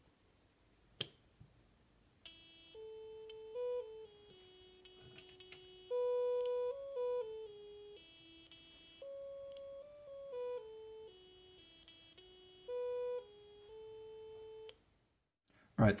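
Small loudspeaker of a Franzis DIY synthesizer kit playing a simple electronic melody of buzzy, beeping notes that step up and down in pitch, some notes louder than others. It follows a single click about a second in and stops shortly before the end.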